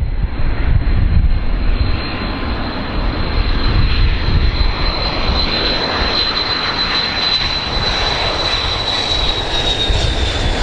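Boeing 727-200 jet airliner on landing approach, its three JT8D turbofan engines giving a steady rumbling jet noise with a high whine that drops slightly in pitch near the end as the plane passes.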